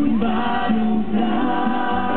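Live Christian worship song: voices singing held notes into microphones over a Korg electronic keyboard.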